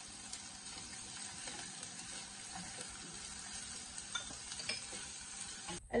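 Chopped onion frying in hot coconut oil in a saucepan, a steady soft sizzle, with a couple of light ticks from the silicone spatula stirring it.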